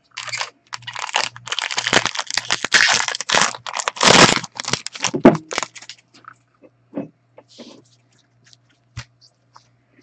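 A trading-card pack's plastic wrapper being torn open and crinkled by gloved hands, a dense crackle for about six seconds. After that come only a few soft clicks and taps as the stack of cards is handled.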